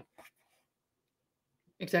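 A pause in conversation: the tail of a spoken word at the start, then near silence, then a voice starting to speak near the end.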